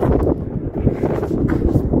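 Wind buffeting the microphone outdoors: an irregular low rumbling gusting noise.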